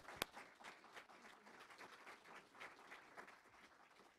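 Audience applauding, faint, with a few sharper claps close to the microphone at the start; the applause thins out toward the end.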